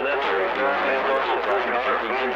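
An unintelligible voice coming over a CB radio receiver's speaker, a station heard through constant radio noise.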